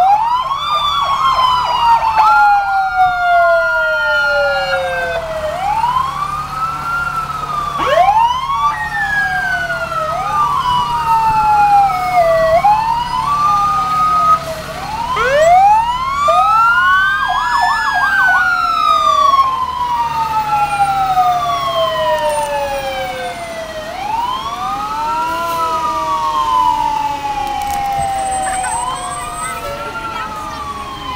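Several fire engine sirens sounding at once, their wails overlapping as each rises and falls in pitch, with short bursts of rapid yelp. Truck engines run underneath.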